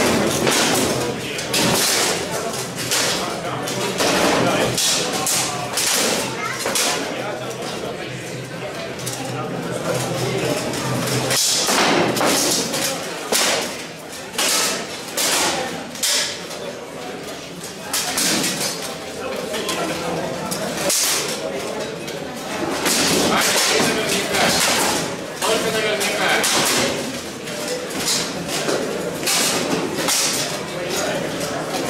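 Steel swords striking wooden shields and steel plate armour in a one-on-one armoured sword-and-shield bout: repeated sharp impacts at irregular intervals, with spectators' voices underneath.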